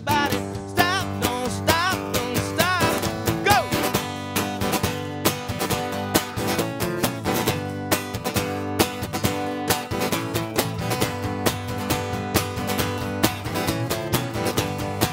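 Live band playing an upbeat instrumental passage: strummed acoustic guitar over a drum kit and electric bass, with a wavering high melody line in the first few seconds.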